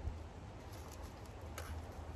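Quiet pause with a low steady background rumble and a couple of faint handling ticks, one right at the start and one about a second and a half in, as a small plastic lighter and its pouch are held in the hands.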